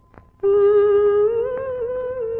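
A woman's voice humming a slow, long-held melody in a soft, wavering line. It comes in about half a second in, after a brief pause, as part of an old Hindi film song.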